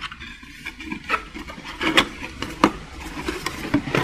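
Hands rummaging in an opened cardboard booster box and lifting out booster packs: rustling with scattered light taps and clicks.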